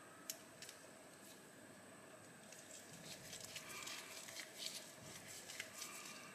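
Faint small clicks and light scratching of a precision screwdriver turning tiny screws into the handle of an Ontario Model 1 folding knife. There are a couple of light ticks near the start and more scattered ticks in the second half.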